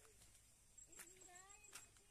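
Near silence with faint, wavering animal calls from about halfway through, and two light clicks.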